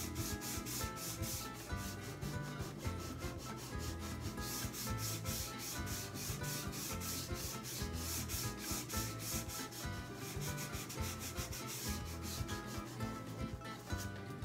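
A palm rubbing soft pastel on a drawing sheet in quick, even back-and-forth strokes, smearing the yellow, orange and red together to blend them.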